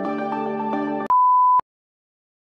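Calm outro music that cuts off abruptly about a second in, followed by a single loud, steady, high electronic beep lasting about half a second.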